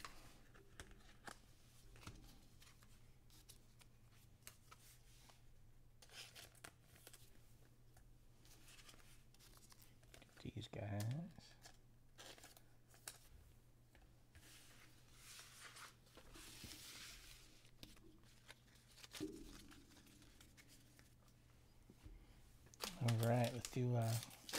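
Faint handling of trading cards and plastic wrapping: scattered small clicks and rustles, and a longer crinkling, tearing stretch of plastic about two-thirds of the way through.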